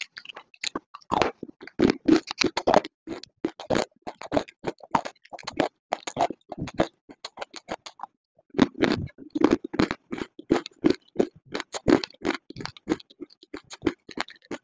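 Close-miked crunching and chewing of hard, dry grey chunks: rapid crisp cracks in quick runs, with a brief pause a little past halfway before the crunching starts again.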